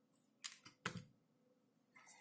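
Two short, sharp scraping strokes, about half a second and one second in: a utility knife blade shaving the insulation of stranded wire to flatten it without exposing the conductor.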